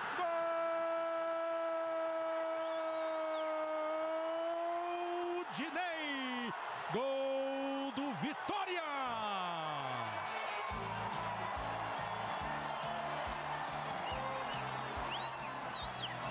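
A Brazilian TV football commentator's long held goal shout, one sustained note lasting about five seconds, over steady stadium crowd noise. More shouted calls follow, then music with a steady beat comes in at about ten seconds.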